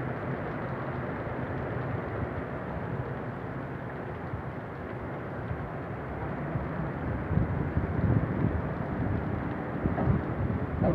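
Storm wind and heavy rain from a whirlwind, a steady rushing noise, with gusts buffeting the microphone from about seven seconds in.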